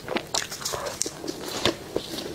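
Close-miked biting and chewing of food: a quick run of short crackles and clicks, the loudest about three-quarters of the way through.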